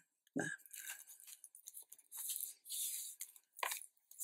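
Paper and card being handled and slid on the album page: two short, high scratchy rustles about two and three seconds in, with a few light taps and clicks around them.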